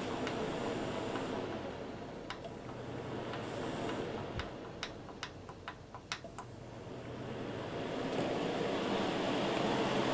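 Holmes electric fan heater's blower running with a steady whoosh while its control-panel buttons are pressed, giving a series of small clicks around the middle. The fan sound drops away and then builds up louder toward the end as the heater is switched to high, where the fan runs faster.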